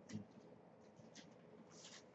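Near silence with a few faint, brief rustles and soft scrapes of paper, the pages of a book being handled.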